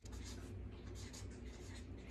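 Marker writing on a large sheet of poster paper: a run of short, irregular scratchy strokes as letters are formed, over a low steady hum.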